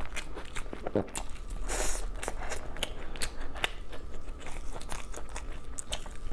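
Close-miked chewing and biting of glazed grilled meat from a skewer: many short clicks, with a louder bite about two seconds in.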